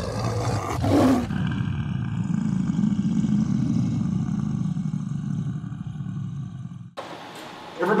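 Intro sound effect: a short rushing burst, then a long, low lion roar lasting about five seconds that cuts off abruptly about a second before the end.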